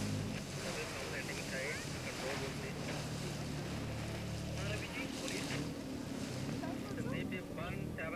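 A steady low engine hum that changes pitch about five seconds in, under outdoor wind noise, with faint distant voices.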